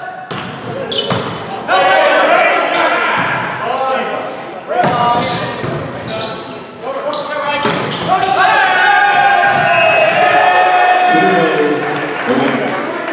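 Volleyball rally in a gym: sharp ball hits and knocks on the court, with loud shouting and cheering voices that burst out several times and hold for a few seconds near the end, echoing in the hall.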